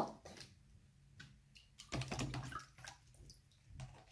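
Water sloshing in a plastic tub as a plastic bottle is held under the surface to fill it, with a louder stretch about two seconds in.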